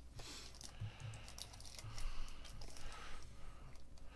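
Faint, irregular clicks of typing on a computer keyboard, over a low steady hum.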